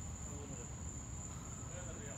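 Crickets trilling steadily at night, one continuous high-pitched note, over a faint low rumble.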